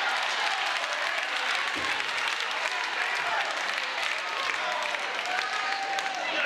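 Church congregation applauding, a dense, steady patter of many hands clapping, with voices calling out among it.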